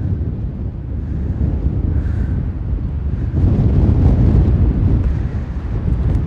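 Wind buffeting the microphone: a loud, low rumble that swells in a stronger gust a little past the middle, then eases slightly near the end.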